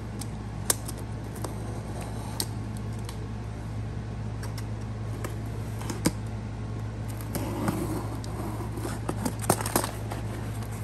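Utility knife cutting the packing tape on a cardboard box, heard as a few sharp clicks and scrapes, then the box being opened with a burst of rustling and crinkling of paper and plastic over the last couple of seconds. A steady low hum runs underneath.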